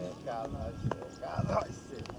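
Indistinct chatter of people nearby, with two sharp clicks or knocks about half a second apart near the middle.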